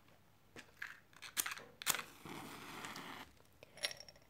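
A wooden match scraped against a matchbox a couple of times, then a short hiss of about a second as it catches and flares, followed by a couple of light clicks.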